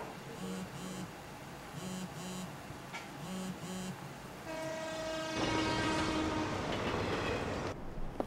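Short, soft pitched notes sound in pairs. About four and a half seconds in, a sustained horn-like tone begins, and a rush of noise builds under it. Both cut off abruptly just before the end.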